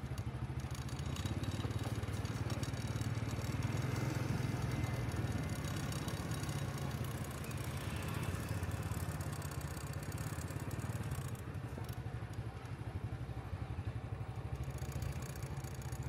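Busy street traffic: motorbike engines running and passing close by over a steady low hum.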